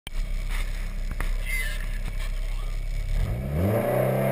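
Toyota MR2's engine idling steadily, then revved up near the end, rising in pitch.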